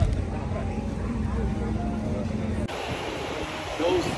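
Indistinct voices over a low, steady rumble of outdoor noise. About two-thirds of the way through, the sound changes abruptly to a steadier, hissier wash of outdoor noise.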